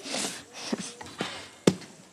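A horse biting off and crunching a piece of carrot from a hand: a short crunching, then a few crisp snaps, the loudest about three-quarters of the way through.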